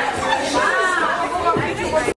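Several women chattering at once in a large gym hall, their voices overlapping.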